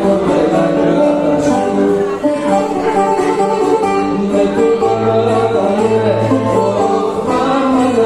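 A bouzouki and an acoustic guitar play a rebetiko song live together: quick plucked bouzouki lines over strummed guitar chords. A low bass note is held from about five seconds in.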